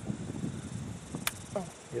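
Quiet outdoor background with a faint steady high-pitched hum, broken by a single sharp, small click about a second and a quarter in and a short murmured 'oh' near the end.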